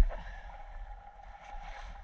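Sailboat under way: wind rumbling on the microphone over a wash of water along the hull, with a single short knock right at the start.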